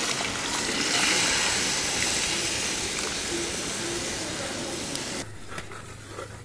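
Liquid poured into a hot clay pot of frying onion masala, setting off a loud sizzling hiss. The hiss swells about a second in, slowly dies down, and drops away sharply near the end.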